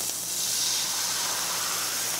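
White wine poured into a hot stainless-steel pan of searing scallops, hissing steadily as it hits the pan and boils off.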